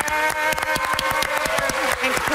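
Studio audience clapping, with one long held voice cheering over the claps that dips in pitch near the end.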